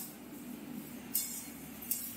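A metal spatula stirring dry moong dal in a steel wok: one short scraping clink about a second in and a smaller one near the end, over faint low room hum.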